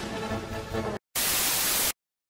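Background music that stops abruptly about halfway through. After a split-second of dead silence comes a loud burst of static hiss lasting under a second, which cuts off sharply into silence.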